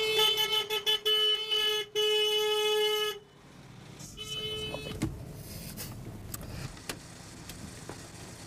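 Car horn honking: a long blast of about three seconds with brief breaks, then one more honk of about a second.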